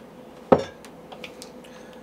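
A glass whiskey bottle set down on a wooden bar top: one sharp knock about half a second in, followed by a few faint ticks.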